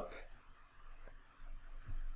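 A few faint clicks over quiet room tone.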